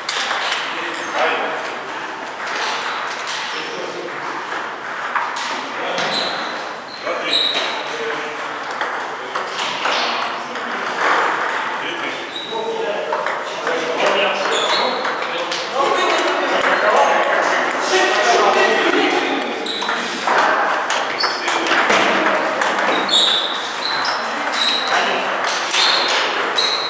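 Table tennis ball clicking repeatedly off the rubber paddles and the table in rallies, each hit a short sharp ping.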